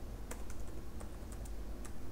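Typing on a computer keyboard: a handful of separate, irregularly spaced keystrokes as a word is typed out.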